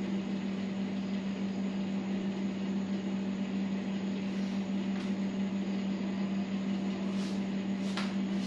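A steady hum with one strong low tone and an even hiss above it, holding level throughout, like a room appliance running.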